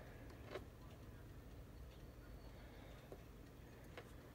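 Near silence with a few faint light clicks, about half a second in, near three seconds and just before the end: a wax pick-up pen tapping rhinestones in a plastic tray.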